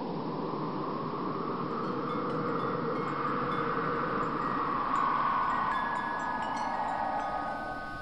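Ambient soundtrack intro: a soft, wind-like whooshing swell that rises and falls, with faint high chime tones coming in a few seconds in.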